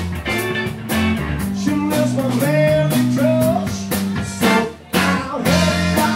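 Live blues band playing: electric guitar over bass and drums, with held melody notes in the middle. The band drops out briefly near the end, then comes back in.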